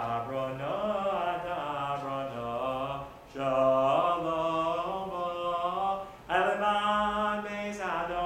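A man singing a synagogue prayer tune solo and unaccompanied, in long held notes, with two short breaks for breath about three and six seconds in.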